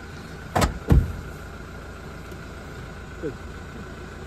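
Two heavy thumps about a third of a second apart, car doors being shut, over the steady hum of a vehicle's engine idling.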